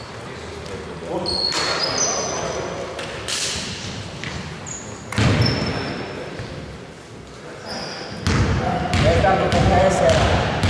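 Basketball court sounds in a large echoing gym: a few short, high sneaker squeaks on the hardwood floor, a basketball bouncing, and indistinct voices of players.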